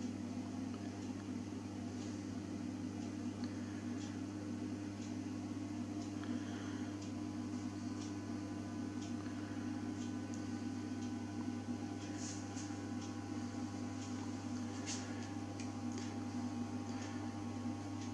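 Steady mains transformer hum from a ferroresonant (constant-voltage) transformer fed by a Variac, a low hum with a row of higher overtones, as the input voltage is wound up and the core is pushed toward saturation. Faint light ticks are scattered through it.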